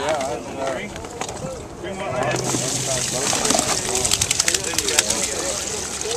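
Water splashing and running, starting about two seconds in, as fish are emptied from a wet weigh bag into a plastic weigh basket, over crowd chatter.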